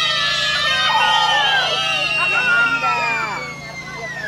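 A group of young children calling out and shouting at once, many high voices overlapping as they eagerly try to answer a question, easing off a little near the end.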